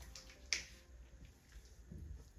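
A single sharp click about half a second in, followed by faint soft rustling.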